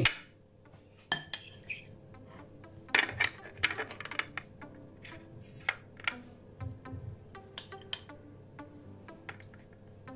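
A metal spoon clinking and scraping against a clear ring mould on a ceramic plate as crushed potato is spooned in and packed down, giving many short, light knocks scattered irregularly throughout. Faint background music runs underneath.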